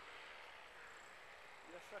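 Faint, distant drone of a paramotor's Solo 210 two-stroke engine running steadily in flight.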